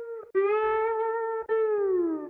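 Closing notes of a song on a slide guitar: long single held notes, the last one sliding down in pitch near the end.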